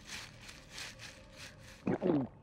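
Cartoon dinosaur chewing a mouthful of leafy plants: soft, wet munching strokes about three a second, then a short voiced grunt near the end.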